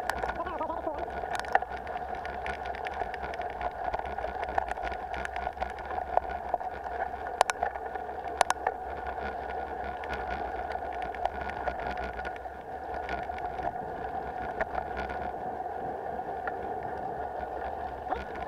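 Mountain bike riding over a stony dirt trail: a steady hum from the camera mount under irregular clicks, knocks and rattles as the bike rolls over stones, with a few sharper knocks.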